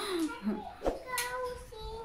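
A young child singing softly, holding one note for under a second. There is a single light tap just before it.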